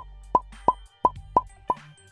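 Six short cartoon 'blop' pop sound effects, evenly spaced about three a second, over quiet background music.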